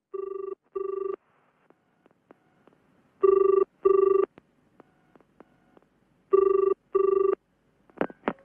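Telephone ringing in the British double-ring pattern: three pairs of short rings about three seconds apart, the first pair quieter than the other two.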